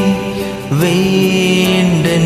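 A man singing a Malayalam Christian devotional song over a karaoke backing track with faint regular percussion ticks. A long held note fades out just after the start, and about two-thirds of a second in a new note slides up into place and is held.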